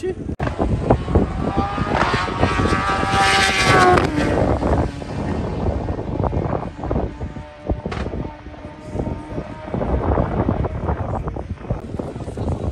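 Sport motorcycle engine at full throttle on a drag run, its pitch rising as it pulls away.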